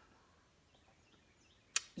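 Near silence of room tone, then a single sharp click near the end.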